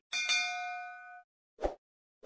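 Animated subscribe-screen sound effects: a bright bell ding that rings for about a second as the notification bell appears, then a short soft pop near the end.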